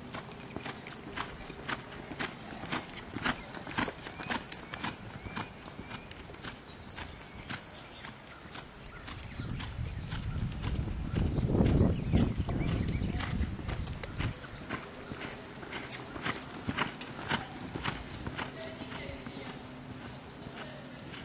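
Hoofbeats of a reining horse being worked, a steady run of short knocks. Midway a louder low rumble swells up and dies away.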